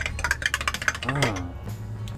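A metal spoon stirring milk tea in a glass measuring cup, clinking quickly against the glass for about the first second.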